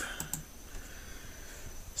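Two quick clicks at a computer, close together in the first half second, then faint room tone.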